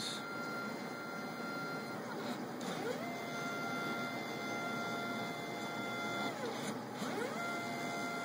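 Stepper motors of a mUVe 1 resin 3D printer whining as its axes drive through a print. A steady high whine glides up about two and a half seconds in to a higher pair of tones, holds for about three seconds, then glides back down as the motion slows.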